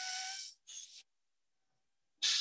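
Dental handpiece running with a steady whine over a loud hiss. It cuts off about half a second in, then gives a second short burst.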